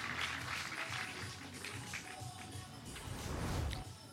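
Crowd applause in a bowling centre, fading over the first second or two, with music playing underneath. A low rumble comes near the end.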